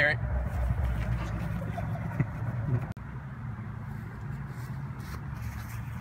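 Steady low rumble of road traffic, with a faint voice about two seconds in. The sound briefly drops out near the three-second mark.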